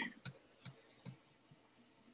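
Three faint, sharp clicks about half a second apart, then near silence: input clicks at the computer as drawing-software settings are changed.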